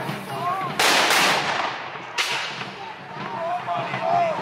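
Two loud black-powder gunshots about a second and a half apart, the first drawn out over nearly a second like a ragged volley and the second sharper, each tailing off. Voices murmur underneath.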